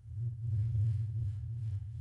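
A steady low hum with no rhythm or change in pitch.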